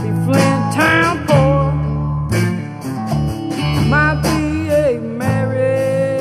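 Country-blues band playing an instrumental break: a guitar lead bending notes up and sliding them down over bass and a steady drum beat.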